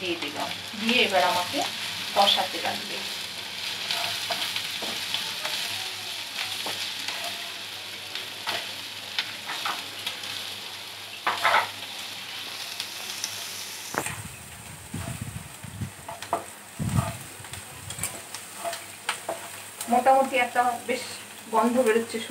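Onions and spices frying with a sizzle in a nonstick pan, a spatula scraping and stirring through them over and over. A few low knocks come about two-thirds of the way through.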